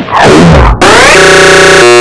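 Clipped, effects-processed cartoon audio: a warped, pitch-bending voice for the first part of a second. It then sweeps down into a steady, stuttering synthetic buzz that holds on one pitch to the end.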